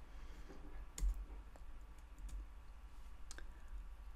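A few faint clicks, likely from the presenter's computer as the slide is advanced. The sharpest comes about a second in, and all of them sit over a low steady hum.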